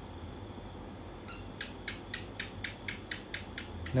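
A quick run of faint high clicks, about five a second, starting about a second in, over a low steady hum.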